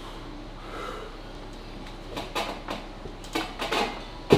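Short knocks and scrapes from a loaded back-pressure armwrestling machine, its cable, lever and weight shifting as a 70 kg load is pulled up and held, coming in a quick cluster in the second half.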